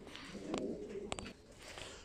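Domestic pigeons cooing faintly in the loft, with a couple of light clicks about half a second and a second in.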